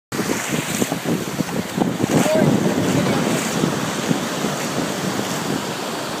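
Small surf breaking and washing up over shallow water at the shoreline, with wind buffeting the microphone in irregular gusts.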